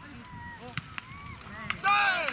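Footballers' short shouts on the pitch, with a few sharp knocks of the ball being struck, then a burst of loud shouting near the end as the goal goes in.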